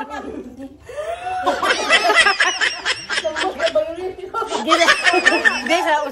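People laughing around the table, in two loud stretches with a short lull about halfway, mixed with bits of talk.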